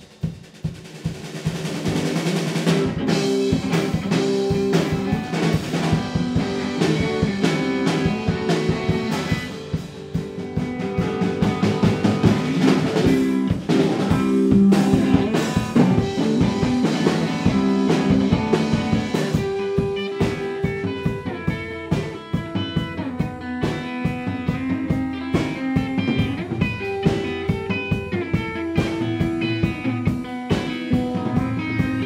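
Rock band jamming: drum kit beating a steady rhythm under an electric guitar played through effects pedals.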